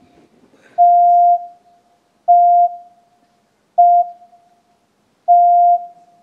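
Series of pure-tone test beeps of a beep-duration reproduction task played over a hall's sound system: four steady beeps at the same pitch, about one and a half seconds apart, of slightly differing lengths of roughly half a second, each trailing off in a short echo. They are context beeps, not all exactly the same, leading up to the final tone whose duration a participant would be asked to reproduce.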